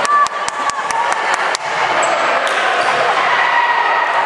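A basketball being dribbled quickly on a hardwood gym floor, about eight bounces in the first second and a half, then stopping. Spectator voices carry on underneath.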